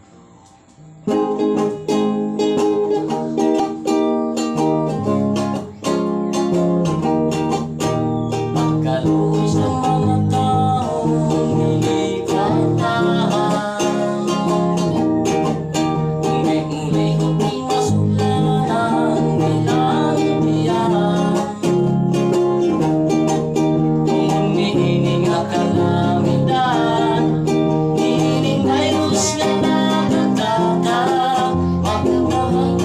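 Acoustic guitar strummed in a steady rhythm, beginning about a second in. A man and a girl sing over it, most clearly in the later part.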